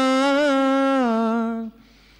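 A man's unaccompanied voice holding one long sung note, the drawn-out last syllable of a line of an Urdu lament, chanted into a microphone. The note slips down a little in pitch about a second in and breaks off shortly before the end.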